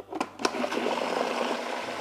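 A few clicks as the food processor lid and pusher are set in place, then its motor starts about half a second in and runs steadily, blending a jalapeno and mayonnaise dip.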